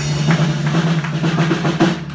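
Live band of fiddle, guitars, bass and drum kit playing the closing bars of a tune, with a fast run of drum hits near the end.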